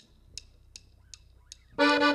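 Drumsticks clicked together for a count-in, sharp clicks evenly spaced at nearly three a second. Near the end the band comes in with a held accordion chord.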